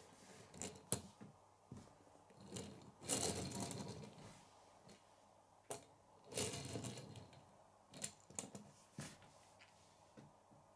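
Faint handling sounds of a small Lego car on wood: two short rolling or rustling runs of its plastic wheels, about three seconds in and again past six seconds, with several sharp clicks and knocks of plastic on wood scattered between.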